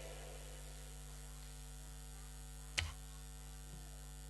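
Steady electrical mains hum from the stage sound system between items, with one short click about three seconds in.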